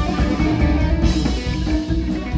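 A live band playing amplified electric guitar, bass guitar and keyboard at a steady level, with drums.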